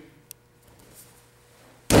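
A judoka thrown with sode tsurikomi goshi lands on the judo mat near the end: a single sudden, loud slap and thud of the body and breakfall hitting the mat.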